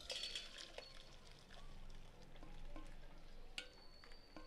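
Boiled soya chunks and their water poured from a steel pot into a steel mesh strainer, the water draining into a steel bowl beneath; faint, with a few light metal clinks and a sharper click near the end.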